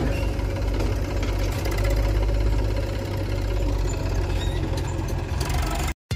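Eicher tractor's diesel engine running steadily under load as it tows a trolley heaped with soil.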